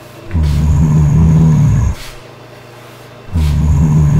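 Low zombie growl, heard twice, each lasting about a second and a half.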